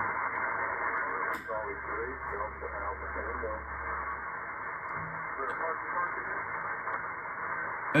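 Elecraft K3 shortwave receiver on 20-metre single-sideband with the NR1 noise blanker switched on: a click about a second and a half in, then a steady, narrow-band hiss with faint SSB voices of stations on a net coming through. The heavy power-line noise is being blanked out.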